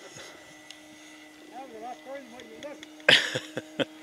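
Steady drone of a radio-controlled biplane's electric motor and propeller flying high overhead, heard faintly. Faint voices come in the middle, and a short loud burst comes about three seconds in.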